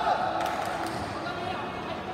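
Voices calling out in a large, echoing sports hall, with a single sharp thump about half a second in.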